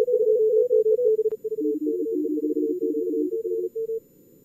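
Fast Morse code (CW) from a contest practice simulator: rapidly keyed tones at a few slightly different pitches, with two stations sending over each other for a couple of seconds, above faint hiss filtered to a narrow band. The keying stops just before the end.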